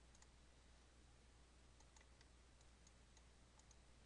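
Near silence with faint, irregular computer mouse clicks, about a dozen, over a low steady hum.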